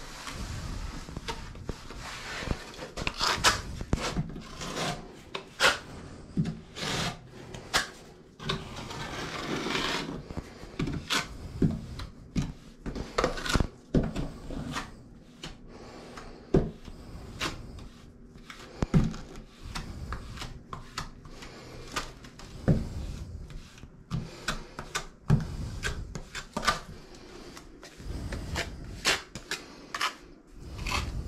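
A flat plastic spreader scraping and smoothing wet white paste over a wall and a board, in many short, irregular strokes.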